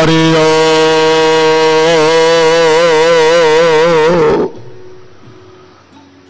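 A male voice singing Gurbani, holding one long note that is steady at first and then wavers, before stopping about four and a half seconds in; a faint hiss remains after it.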